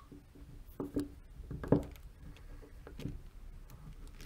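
Faint scattered clicks and light metal taps from a bit in a hand-held driver turning the adjusting screw of an Aisin AW55-50SN transmission solenoid. There are a few sharp ticks about a second in and one more near three seconds.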